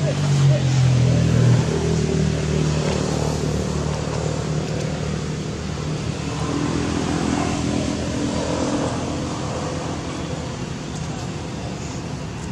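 A motor vehicle engine running steadily, with people's voices in the background.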